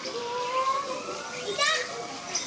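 Children's voices and chatter from visitors in the background, with a brief high-pitched cry near the end.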